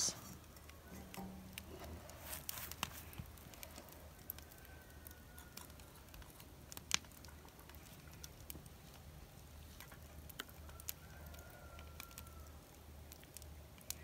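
Faint scattered clicks and crackles over a low steady hum as molten lead is poured from a heavy cast iron pot into a muffin tin, with one sharper click about halfway through.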